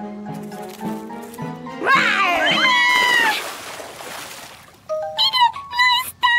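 A cartoon tiger's yowling roar over background music: a loud call about two seconds in whose pitch swoops up and down for about a second and a half. A rush of noise follows, then short yelps near the end.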